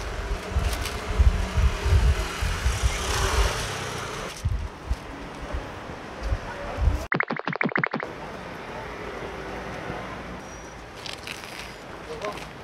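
Wind buffeting the microphone in gusts of low rumble, strongest in the first few seconds, over a steady outdoor hiss. About seven seconds in comes a brief run of about nine quick, even pulses lasting under a second.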